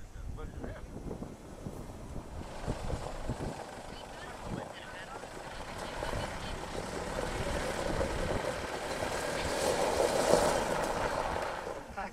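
A motor vehicle on a gravel road, its engine and tyre noise growing steadily louder over several seconds and peaking near the end, over wind buffeting the microphone.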